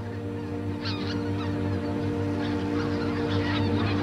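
A flock of geese calling, scattered honking calls throughout, over steady low background music.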